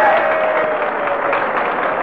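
Studio audience laughing and applauding after a joke. A long falling tone rises above the crowd noise in the first second and a half.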